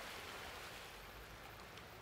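Faint, steady beach ambience: an even hiss with a low rumble underneath.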